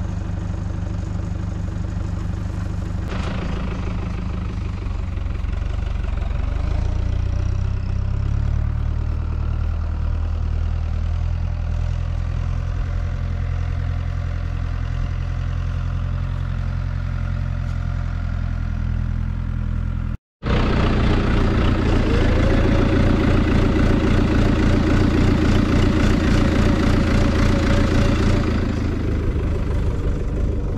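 An engine idling steadily with a low hum. About two-thirds of the way in the sound drops out for a moment, then comes back louder and fuller.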